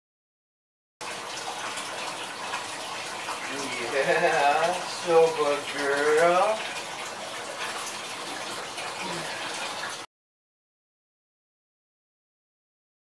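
Water running and splashing in a bathtub as a dog is rinsed with a cup, starting abruptly about a second in and cutting off suddenly near the end. A voice rises and falls for a few seconds in the middle.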